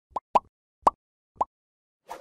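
Four short pop sound effects, each a quick upward blip, coming in an uneven run over about a second and a half. They are the click-and-pop effects of an animated like-and-subscribe button overlay.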